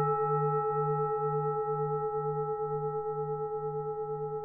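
A struck Buddhist bowl bell ringing out and slowly dying away, its low tone wavering about twice a second.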